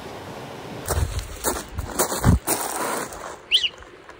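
Dry leaves and twigs rustling and crunching in a run of irregular bursts with dull thumps, starting about a second in, like steps or movement through leaf litter. A brief high chirp comes near the end.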